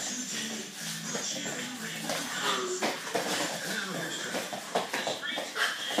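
Indistinct children's voices and short whimper-like effort sounds from youth wrestlers grappling, over low background music in a small room.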